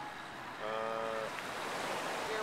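Small waves washing onto a sandy beach, a steady rushing noise. A little past half a second in, a short held pitched call sounds for about half a second over it.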